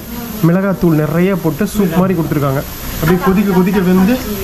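A man's voice crooning a sing-song 'noo noo' in short held, wavering notes, over the faint bubbling of a pot of spicy stew boiling on a tabletop burner.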